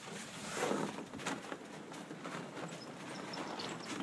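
Faint footsteps on a snow-dusted wooden deck: a few soft crunches and knocks over a quiet, steady outdoor hiss.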